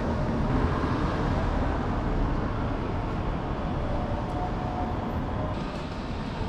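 Road traffic noise: a vehicle driving along the road past the microphone, a steady rush of engine and tyre noise.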